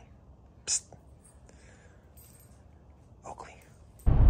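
A quiet stretch with one sharp click just under a second in and a brief, faint breathy sound near the end.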